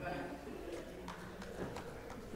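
Faint, irregular footsteps of performers walking onto a stage: scattered light taps of shoes on the stage floor.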